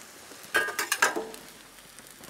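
Metal cooking utensils clinking: a quick run of sharp metallic clicks with a brief ring, about half a second in. Under it is faint steady sizzling from onions on the gas grill's plancha.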